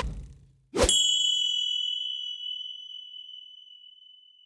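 Logo-sting sound effect: the tail of a hit at the start, then a little under a second in a sharp strike that rings on as a single high, bright ding and fades slowly.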